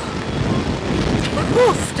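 Wind rushing over the onboard camera's microphone as the Slingshot ride's two-seat capsule swings through the air, a steady hiss of wind noise. A rider exclaims and laughs near the end.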